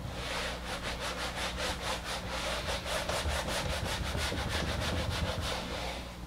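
Whiteboard eraser scrubbing back and forth across a whiteboard, in quick, even strokes about five a second, wiping off marker writing.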